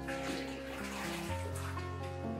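Background music with steady notes and a bass line, over water splashing and sloshing in a bathtub as a wet puppy is washed by hand. The splashing dies away near the end.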